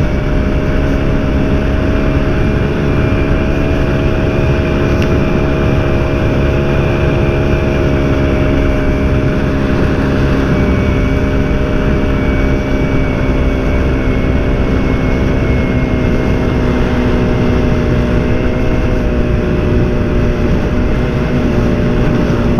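1952 BSA Bantam's two-stroke single-cylinder engine running at a steady cruising speed, with the rush of headwind over the handlebar-mounted microphone.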